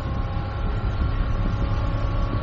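Cabin sound of JR Hokkaido's dual-mode vehicle running on rails: a steady low rumble from the diesel engine and steel wheels on the track, with a faint steady whine above it.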